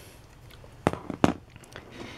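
Two sharp clicks about a second in, then a few fainter ticks: small objects being picked up and handled on a table.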